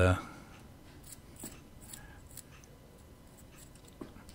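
A few faint clicks and light rubbing as a small 3D-printed PLA test block is handled and turned in the fingers.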